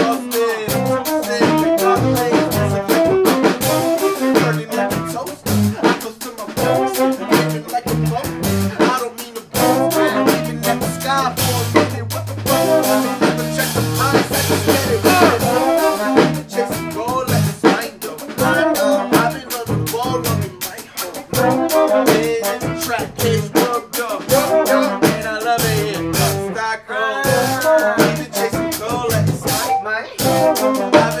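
A band playing a hip-hop song live, with drum kit, bass, guitar and brass, and vocals over it. A deep bass line stands out around the middle.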